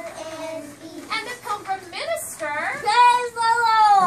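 Young children singing or chanting together, ending in one long, loud held note that starts about three seconds in and falls in pitch.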